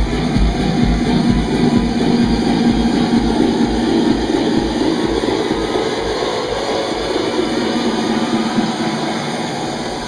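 Electronic dance music played loud over a club sound system. The kick-drum beat fades out about halfway through for a breakdown, leaving a sustained noisy wash with a held tone.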